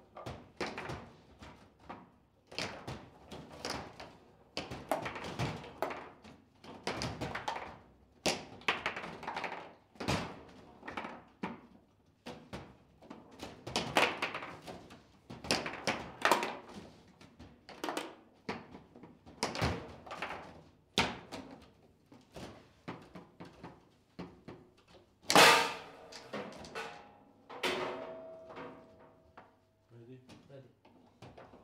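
Table football in play: an irregular, rapid run of sharp knocks and clacks as the ball is struck by the plastic figures and the rods are worked, with one much louder crack about 25 seconds in.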